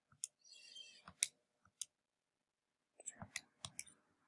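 Calculator buttons being pressed in quiet clicks: a few single presses spread out, then a quick run of several presses about three seconds in, as the value of the function is keyed in.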